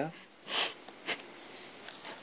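A short sniff, a breath drawn in through the nose, about half a second in. After it come a few faint scratches and clicks of a pen on paper as a box is drawn around the written answer.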